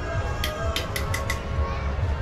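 A quick run of about six sharp clicks and clinks as containers and utensils are handled in a plastic cooler box, over a steady low rumble.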